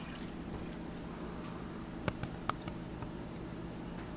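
Hot water being poured from a small cup into the water bath of a crock pot: a faint, quiet trickle, with a few small drips about two seconds in.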